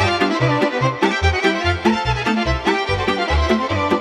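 A Romanian folk band playing the instrumental introduction to a song: a violin leads the melody over a steady bass beat.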